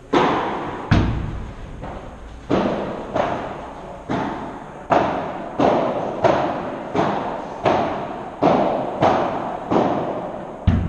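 Ball hits of a padel rally: the ball struck by solid padel rackets and bouncing on the court, about a dozen sharp knocks in ten seconds at an irregular rally pace, each ringing out in a large hall. One hit about a second in is heavier and deeper than the rest.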